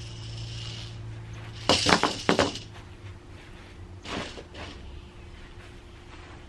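A plastic hula hoop set down on a sheet of cardboard, clattering in a quick cluster of three or four sharp knocks about two seconds in, with two softer knocks a couple of seconds later.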